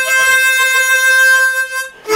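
Chromatic harmonica playing a melody, holding one long steady note that fades away near the end as the phrase closes.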